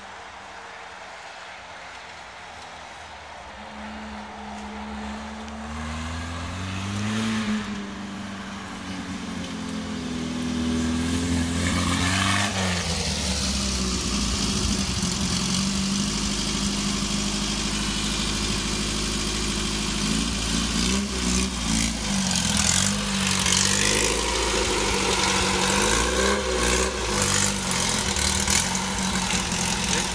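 A VW dune buggy's air-cooled flat-four engine driving off-road, faint at first and much louder as it comes close. It revs up repeatedly, with pitch rising and falling, and swings up and down in short revs in the later part.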